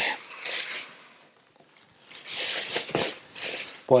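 Crinkly rustling as a loaf of bread is handled at the counter: a short burst, then a longer stretch of rustling from about halfway through.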